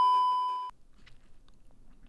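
A steady, high test-pattern beep of the kind played over TV colour bars, used as an editing transition. It cuts off suddenly under a second in, and a few faint clicks follow.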